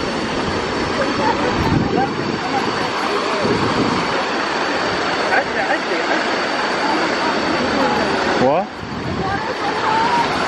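Steady rush of a waterfall and its stream, with people's voices scattered over it.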